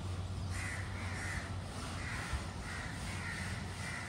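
A crow cawing over and over, short harsh calls about twice a second, over a steady low hum.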